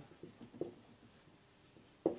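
Faint scratching of a marker pen writing on a whiteboard, mostly in the first second.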